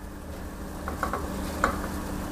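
Raw pork leg pieces sliding off a bowl into a stainless steel pot of water at a rolling boil, with a few light splashes and clicks from the pieces and the utensil against the bowl around the middle. A steady low hum of the boil and the stove runs beneath.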